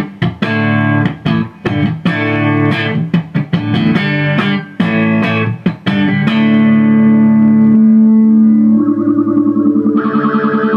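Electric guitar played through an Ibanez UE400 analog multi-effects unit with its stereo chorus/flanger on: strummed chords for about six seconds, then a long held note, then a fast pulsing note near the end.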